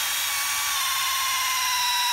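Power drill boring a hole down through hard-packed ground and sedimentary rock, its motor whining steadily with the pitch drifting slightly lower under load.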